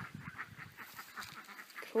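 Faint, rapidly repeated bird calls in the background, about five a second and evenly spaced.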